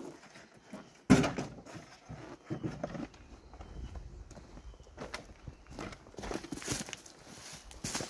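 A sharp knock about a second in as a plastic bucket is lifted from a pickup's bed, then footsteps crunching irregularly through dry leaf litter and twigs, denser near the end.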